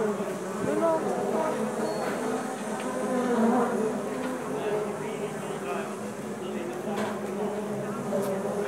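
Street crowd ambience: many people talking at once, an overlapping murmur of voices with no single clear speaker.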